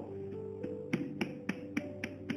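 Soft background music between the preaching: sustained keyboard-like notes that step higher, with a light clicking beat of about three to four clicks a second starting about half a second in.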